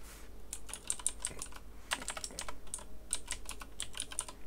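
Typing on a computer keyboard: an uneven run of quick keystrokes as a web address is typed in.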